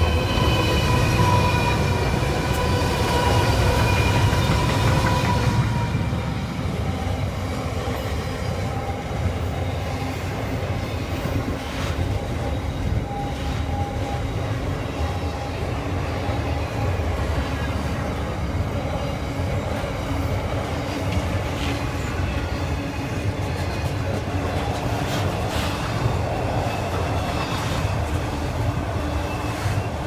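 A freight train's lead diesel locomotives (Pacific National NR and AN classes) passing close, their engines loud with several steady whining tones over a deep rumble for about the first six seconds. Then the long steady rumble of loaded container wagons rolling by, with occasional sharp wheel clicks over rail joints and a brief faint wheel squeal.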